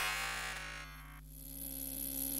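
Quiet breakdown in a tech house track: the drum beat cuts out, leaving faint steady synth tones, with a thin high tone entering about a second in. The level dips, then slowly swells back.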